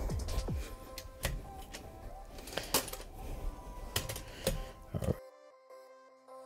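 Sharp clicks and clatter of a metal light stand being handled and unfolded, over faint background music. About five seconds in the room sound cuts off, leaving only the music.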